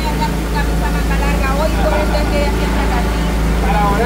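A loud, steady low motor drone, with people talking over it.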